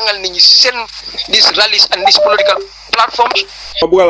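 A man speaking in French, with a steady high-pitched hiss running under the voice.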